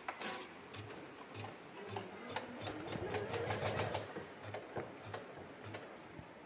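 Usha 550E computerised embroidery machine stitching: a rapid run of needle clicks over a low, regular thump.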